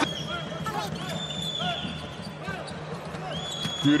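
Basketball court sound: a ball bouncing on the hardwood and sneaker squeaks over arena crowd noise, with a couple of held high-pitched squeals.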